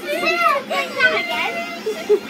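Children's voices shouting excitedly at play, high-pitched and rising and falling, with no clear words.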